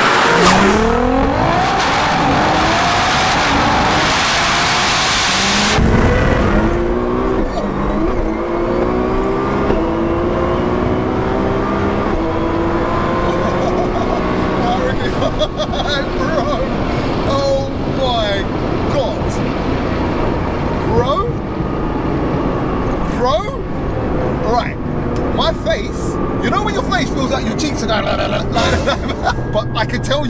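Highly tuned Nissan R35 GT-R's twin-turbo V6 under hard acceleration: first it rushes past outside with the engine note rising, cut off suddenly about six seconds in, then it is heard from inside the cabin, its pitch rising again and again as it pulls through the gears.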